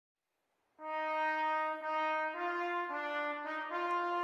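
Recorded backing track opening with held brass notes, starting about a second in and stepping through several pitches like a fanfare.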